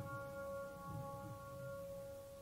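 Soft piano music: a held chord rings on and slowly fades.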